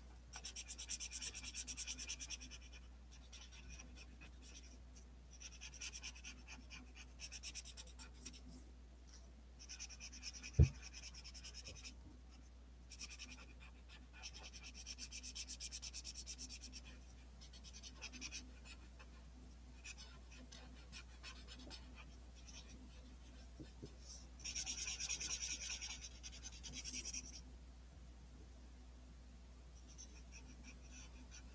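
Large black felt-tip marker scribbling fast on paper in bursts of rapid strokes with short pauses between, colouring in a large area. A single sharp knock about ten seconds in is the loudest sound, and a low steady hum runs underneath.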